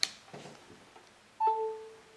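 A micro-USB plug clicks into the battery case's port, and about a second and a half later the iPhone sounds its short charging chime, a single ding that fades out, as it starts charging from the connected cable.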